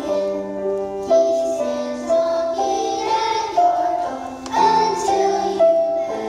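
Children's choir singing a song in unison over instrumental accompaniment, in a melody of held notes.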